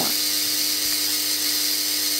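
Spark-gap Tesla coil running: a steady buzzing hiss from the spark gap firing and the purple sparks at the top terminal, with a steady hum underneath.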